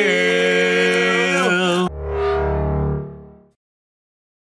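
Several male voices singing held notes together, sliding down in pitch and breaking off abruptly about two seconds in. A low sustained musical chord cuts in and fades away over about a second and a half.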